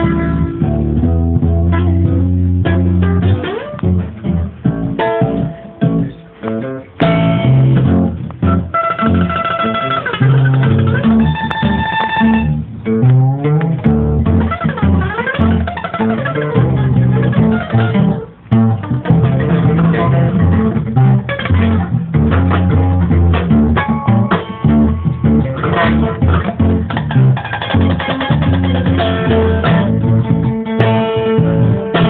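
An acoustic guitar and an upright double bass playing a plucked instrumental improvisation together, the bass holding low notes under the guitar's picked lines. About twelve seconds in, a few clear ringing high notes are followed by sliding notes.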